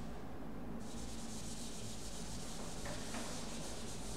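Board duster rubbing across a chalkboard, erasing chalk writing: a steady scrubbing hiss that pauses briefly at the start and resumes under a second in.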